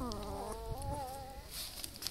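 Newborn puppy whining: one thin cry that falls in pitch, then wavers before fading, lasting about a second and a half.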